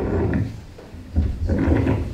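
Handling noise from a lectern microphone being gripped and repositioned on its gooseneck stand: two bursts of low rumbling, rubbing thumps, the second longer, about a second in.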